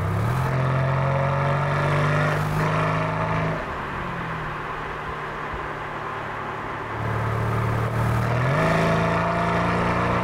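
Mercedes-AMG C63 S twin-turbo 4.0-litre V8 with an Akrapovic exhaust pulling under throttle, its pitch held high for a few seconds. It then eases off, quieter for about three seconds, before the throttle opens again and it pulls once more near the end.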